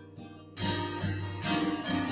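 Acoustic guitar strummed: a short lull, then strums about half a second in, again a second later and once more just after.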